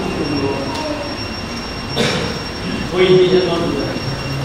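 A pause in a speech, filled with steady background noise and a faint high steady whine. There is a single click about two seconds in, and a voice speaks briefly about three seconds in.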